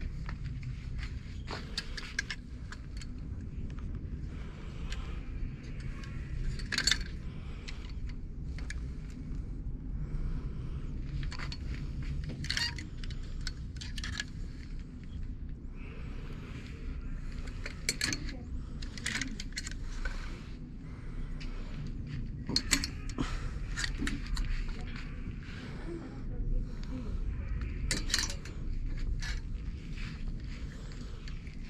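Plastic clothes hangers clicking and scraping along a metal clothing rail as garments are pushed aside and pulled out one by one, in sharp irregular clacks every second or two, over a low steady rumble of the room.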